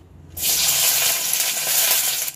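Sliced onions frying in hot oil in a kadai, sizzling loudly. The hiss starts suddenly about a third of a second in and holds steady.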